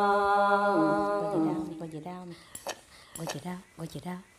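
A woman singing unaccompanied in Red Dao folk style holds a long note, steps down in pitch about a second in and fades out by about two seconds. After that come a few light clicks and soft, short voice sounds.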